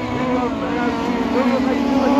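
Autograss saloon car engines running on the dirt track: a steady engine note with some rises and falls in pitch.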